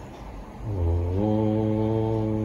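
A man chanting a single long, low Om that starts just under a second in. Its pitch steps up once, then it is held steady on one note.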